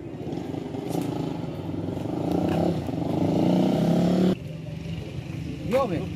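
A motor vehicle engine running, rising slowly in pitch and getting louder, then cutting off suddenly about four seconds in.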